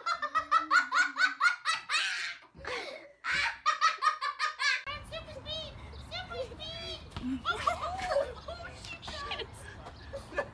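Young child laughing hard, a fast run of high-pitched giggles over the first few seconds. About five seconds in, the sound switches to a steady low rumble with scattered voices over it.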